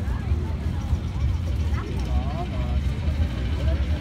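Voices of a crowd walking along a path, with a steady low rumble underneath.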